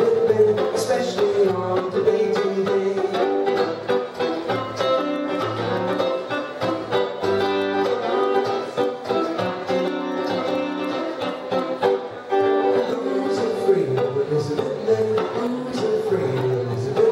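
Violin and guitar playing an instrumental introduction to a song: the violin carries a bowed melody over the guitar's chord accompaniment, with no singing.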